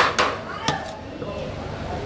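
A metal serving spoon knocking against the rice pot and plate while pulao is dished out: three sharp knocks in the first second, the first the loudest.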